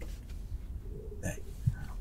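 A low, steady rumble, with a single short spoken "hey" a little over a second in.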